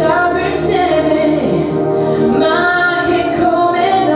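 A young woman singing solo into a microphone over instrumental accompaniment, holding long notes.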